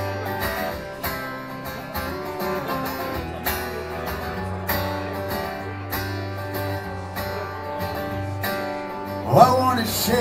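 Acoustic guitar strummed in a steady rhythm over a held low note, the instrumental opening of a song played live. A man's singing voice comes in near the end.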